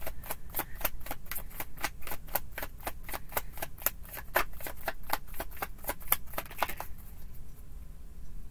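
Tarot card deck being shuffled by hand: a quick, even run of card slaps and riffles, about five a second, that stops about seven seconds in.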